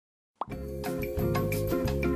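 Silence for a moment, then a short upward-sliding pop, and background music with a steady beat starts about half a second in.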